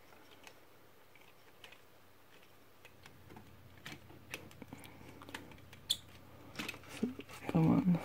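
A small precision screwdriver turning a tight screw in a plastic transforming-robot toy figure, with the plastic parts being handled: faint scattered clicks and ticks that begin after a few quiet seconds, with one sharper click about six seconds in.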